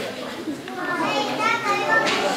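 Children's voices chattering and calling out, high-pitched, just after the music stops at the start.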